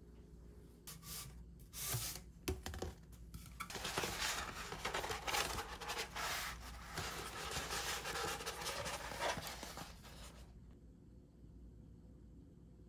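A large rolled paper poster being unrolled and pressed flat by hand on the floor. A few crackles come first, then about seven seconds of dense paper rustling and crinkling that stops abruptly.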